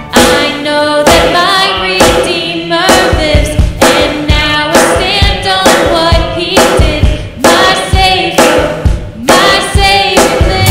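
Contemporary worship band performing a song: voices singing in phrases over acoustic guitar and keyboard, with a steady beat.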